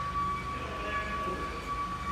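Pipe cutting and beveling machine running in a workshop: a steady high-pitched whine over a low hum.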